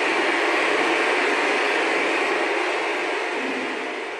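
Dense crowd applause, even and steady, fading out near the end.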